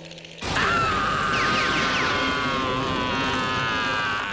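Courage the Cowardly Dog's long, high-pitched cartoon scream, bursting in about half a second in and held for several seconds with a slight waver, over a rattling clatter.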